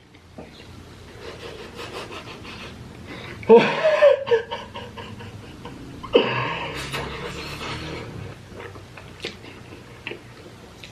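A man panting and breathing out hard from the burn of very spicy Korean fire noodles. There is a short voiced exclamation with a falling pitch about three and a half seconds in, and a long breathy blow-out about six seconds in that trails away.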